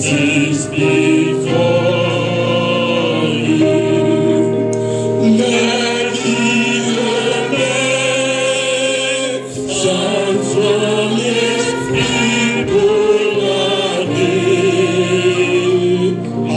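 A gospel hymn sung by a group of voices, led by a man singing through a handheld microphone, with long held notes and a wavering vibrato.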